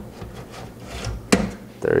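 Hard-drive tray sliding into the drive cage of an XFX Type 01 PC case: a light rubbing scrape and a few small ticks, then one sharp click a little past a second in as the tray seats.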